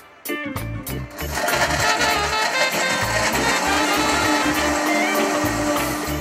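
Commercial countertop blender blending a smoothie. Its motor starts about a second in and runs to near the end as a dense whirring rush, with a steady hum that comes in about halfway through. Upbeat background music plays throughout.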